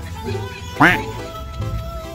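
A single short, loud quack-like squawk about a second in, a comic sound effect, over bouncy background music.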